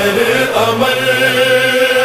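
Voices chanting a devotional refrain, holding long drawn-out notes with a slight waver and moving to a new note about half a second in.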